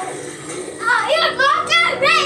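A child's high-pitched voice calling out loudly, starting a little under a second in, with sharp jumps in pitch.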